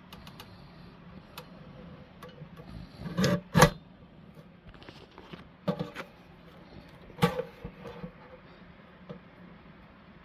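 Guillotine paper cutter chopping printed sheets glued to 150 gsm card: the blade arm comes down three times, a short scrape ending in a sharp clack, the first a little before the middle and the loudest, then twice more about a second and a half apart.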